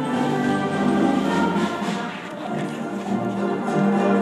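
School concert band playing, wind and brass instruments holding chords that change every second or so.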